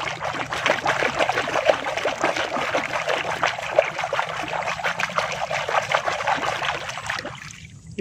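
Water splashing and sloshing in quick, irregular strokes as a hand scrubs a small plastic toy figure in a bucket of soapy water. The splashing stops about a second before the end.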